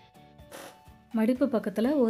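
Soft background music with a short rasping sound about half a second in, then a woman's voice comes in loudly about a second in.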